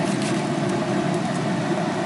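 Steady whirring drone of a Traeger pellet smoker grill running at about 425 degrees, its fan going, with a few faint clicks of a knife and fork on a plate.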